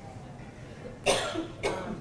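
A person coughing twice in a room, the first cough about a second in and a shorter one just after.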